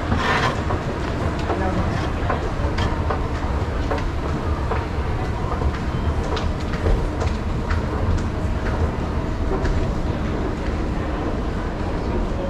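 Escalator running: a steady low rumble with scattered light clicks and clatter from the moving steps.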